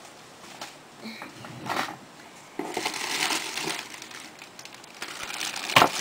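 Packaging being rummaged through by hand: a stretch of crinkling and rustling about halfway through, then a single sharp knock near the end as something is set down or bumped.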